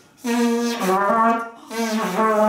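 Trumpet played in a short demonstration: a held note that steps down in pitch, a brief break about a second and a half in, then another note starting near the end.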